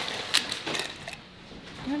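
Cap being twisted off a glass liquor bottle: one sharp click about a third of a second in, a smaller one shortly after, then quieter handling.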